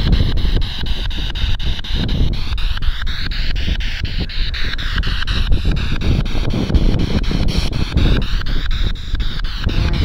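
Spirit box radio scanner sweeping through stations: hissing static stepped by fast, regular ticks, about four a second, with the hiss rising and falling in pitch. Strong wind is buffeting the microphone underneath.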